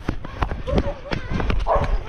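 Running footsteps on paving stones, a quick series of footfalls with the camera jolting and wind rumbling on the microphone. Short wordless voice sounds break in near the middle and the end.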